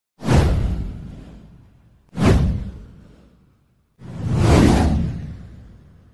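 Three whoosh sound effects from an animated title intro, each with a deep low end: the first two hit suddenly and fade over about a second and a half, the third swells up and fades out.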